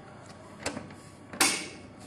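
The printer compartment cover of a Carewell T12 ECG machine being pushed shut after loading roll paper: a light click, then a louder sharp snap as it latches about a second and a half in.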